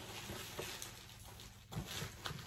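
Faint rustling and handling of packing material inside a cardboard shipping box, with a soft knock near the end.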